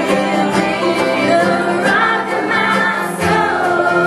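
Live bluegrass gospel band: two women singing together over upright bass and strummed acoustic strings.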